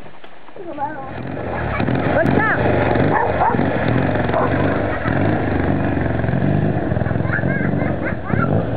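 Triumph 500 Daytona's parallel-twin engine running, louder from about a second and a half in as the motorcycle pulls away. A dog barks over it in the first few seconds.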